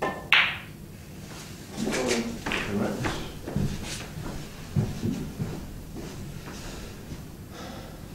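A snooker shot: a sharp, loud clack of the cue tip striking the cue ball about a third of a second in. It is followed by softer knocks, low indistinct voices and movement around the table.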